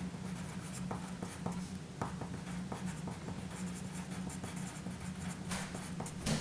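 Wooden pencil writing on paper: a run of short scratching strokes and small ticks as a phrase is written out in longhand.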